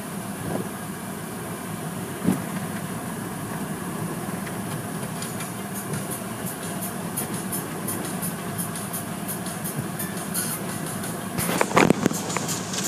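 Automatic car wash heard from inside the car: steady water spray and wash-machine noise, with cloth brushes slapping against the windshield in rapid strikes from about halfway in, and a few louder thumps near the end.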